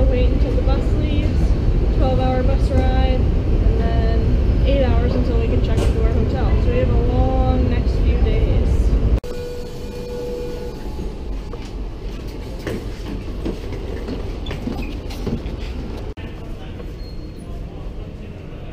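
Busy underground railway station and train: a loud low rumble with people's voices over it, then, after a sudden drop in level about nine seconds in, the quieter inside of a suburban train carriage with scattered clicks and knocks.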